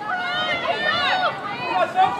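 Several high-pitched voices shouting and calling out over one another, with no clear words.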